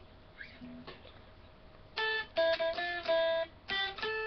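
Electric guitar picked one note at a time: after a quiet start with a faint note and a click, about half a dozen single notes follow in quick succession from about halfway in.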